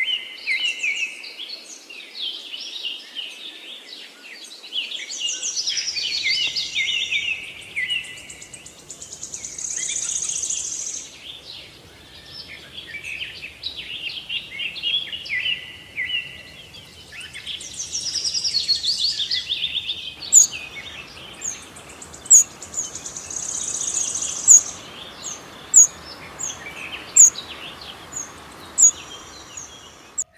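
Several birds singing and chirping together in the open air, over a faint steady background hiss. From about two-thirds of the way through, one bird repeats a sharp, high chirp roughly once a second.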